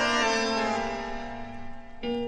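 Tango orchestra recording: a full sustained chord held and slowly fading away at the opening of the piece.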